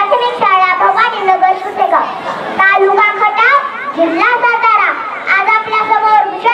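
Speech only: a young girl's high voice delivering a speech into a microphone, her pitch rising and falling as she declaims.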